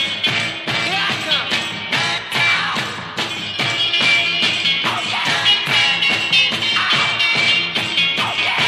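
Mid-1960s garage rock recording playing at full volume, with a steady driving drum beat.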